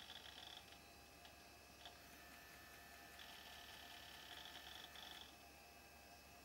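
Near silence: room tone with a faint low hum, and a faint high-pitched buzz in two stretches, the second from about three to five seconds in.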